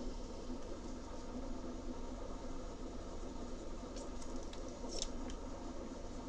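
Soft scratching of colouring strokes on watercolour paper over a low room hum, with a couple of slightly louder strokes about four and five seconds in.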